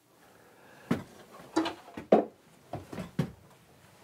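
A series of about five wooden knocks and thumps, roughly half a second apart, in a small wood-walled room.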